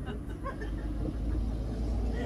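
A steady low rumble that dips briefly under half a second in, with a few faint short sounds above it.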